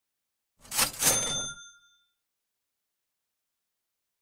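A brief clatter, then a single bright metallic ding about a second in that rings with several clear tones and fades out within about a second.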